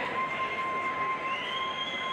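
A steady high-pitched tone over the din of an arena crowd, joined about halfway in by a second, higher tone that glides up and holds.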